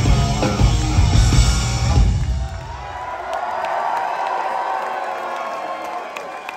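Live rock band of guitar, bass and drums crashing through the last bars of a song, the drums and bass cutting off about two seconds in and the final chord ringing away. The crowd then cheers and whoops.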